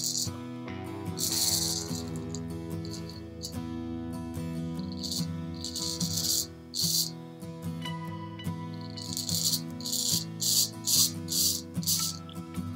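Straight razor with a Diane D73 blade scraping through lathered stubble on the first pass, in a series of short strokes that come quicker near the end: the scrapey sound of the blade cutting whiskers. Background music plays underneath.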